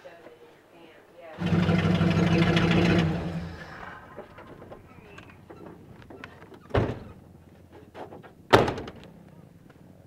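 A man lets out a loud, growling roar lasting about two seconds. Later come two sharp thuds a couple of seconds apart, the second the loudest, as a pickup truck's door is shut.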